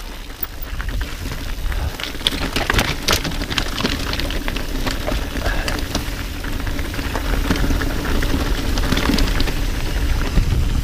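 Mountain bike tyres crunching and crackling over loose stones and gravel on a rocky singletrack descent, with a dense run of irregular clicks and rattles from the bike over the rough ground and a steady low rumble underneath.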